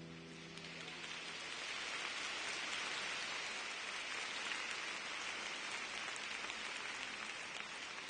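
Audience applauding, the clapping swelling over the first couple of seconds and then holding steady.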